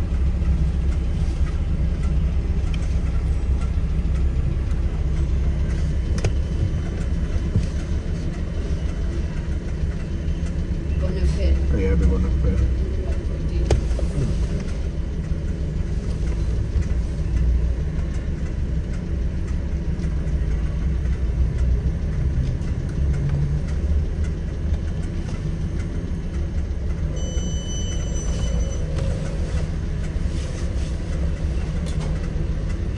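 Steady low rumble of a car in motion, heard from inside, with indistinct voices underneath. A short high electronic tone sounds near the end.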